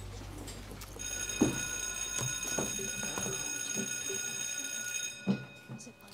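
Electric school bell ringing steadily for about four seconds, starting about a second in and cutting off near the end. A sharp knock comes as it starts and another as it stops.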